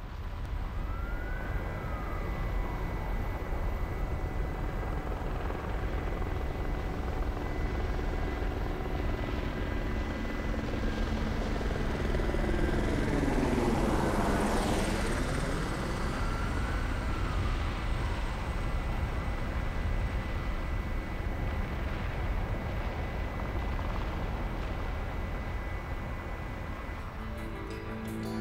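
Helicopter running steadily overhead as a continuous low roar, with a hollow sweeping swish that falls and then rises about halfway through.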